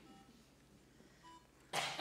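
Quiet room tone over the PA with a faint, brief beep-like tone a little past the middle. Near the end comes a short, sharp breath drawn close to the microphone, just before the song leader hums the starting pitch.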